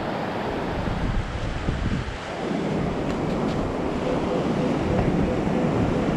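Surf washing in and wind on the microphone as a steady rushing noise. Over the last couple of seconds a Minelab Equinox 800 metal detector sounds a repeated mid-pitched beep as its coil passes over a buried target.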